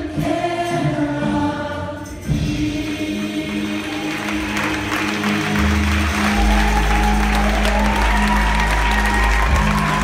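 Gospel choir with band holding a final sung chord that breaks off about two seconds in, followed by audience applause and cheering while the band keeps playing, with a deep bass note coming in about six seconds in.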